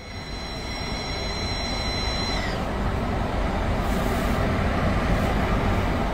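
Car A/C blowing through a dashboard vent with a high, steady whistle, the whistle the customer complained of with the A/C on. The whistle cuts off about two and a half seconds in, leaving the steady rush of air from the vent.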